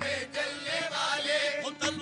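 Qawwali singers chanting a devotional line together over harmonium accompaniment, with wavering, ornamented vocal lines.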